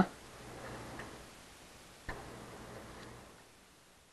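Faint light clicks and ticks in two short stretches, each about a second long. The second stretch opens with a sharper click about two seconds in.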